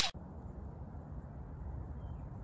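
The tail of a whoosh sound effect cutting off at the very start, then steady low outdoor background noise, mostly rumble, on a phone microphone.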